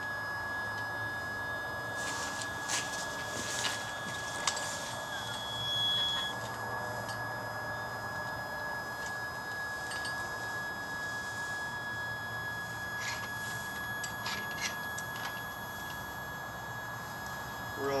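Sky-Watcher EQ6-R Pro equatorial mount's motors slewing the telescope: a steady high-pitched hum, with a brief higher tone joining about five seconds in.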